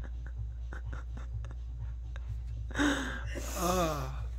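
A pen scratching and tapping on a spiral-notebook page in small scattered ticks. Near the end a woman gives a sharp breath and a short vocal laugh that falls in pitch.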